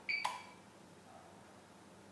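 The APC UPS's buzzer gives one short electronic beep, a fraction of a second long, with a light click as its front-panel power switch is pressed.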